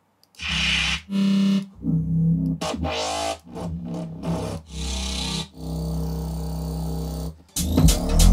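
Bass one-shot samples from a grime bass kit auditioned one after another in FL Studio: a string of short, deep synth bass notes, the last held for about two seconds. The full beat starts playing again near the end.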